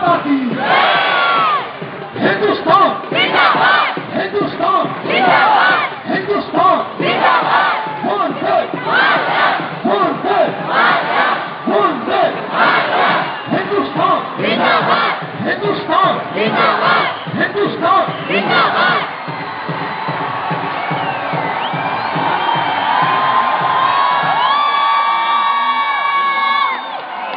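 A large crowd chanting in rhythm, one shouted chant about every second, for the first nineteen seconds or so. It then gives way to a steady crowd din, with a long held call over it near the end.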